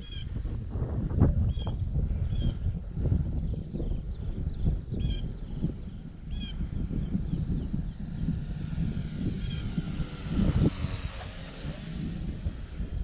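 Radio-controlled P-51B Mustang model airplane flying past: its motor is a faint distant whine that swells as the plane comes close overhead near the end. Wind rumbles on the microphone throughout.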